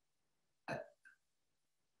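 Near silence in a pause between phrases, broken once, a little under a second in, by a brief vocal sound from the man, a short grunt-like noise from his mouth or throat, with a faint click just after.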